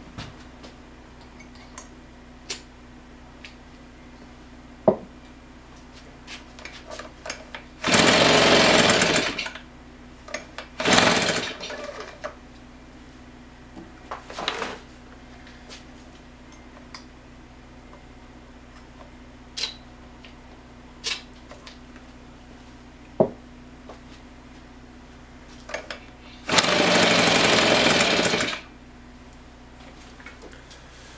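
Husqvarna 150BT leaf blower's two-stroke engine firing on fuel primed down the plug hole: it runs in short bursts of a second or two and dies each time, four times in all. Scattered clicks and knocks come between the bursts.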